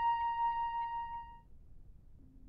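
A single held synthesizer note with a slight quick wobble, fading out about one and a half seconds in and leaving only faint hiss.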